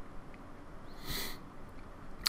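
One short breath by the presenter at the microphone, about a second in, over quiet room tone.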